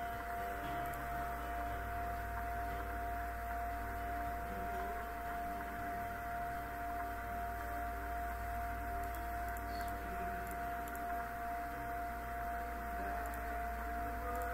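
A steady held tone over a low hum, unchanging in pitch and level.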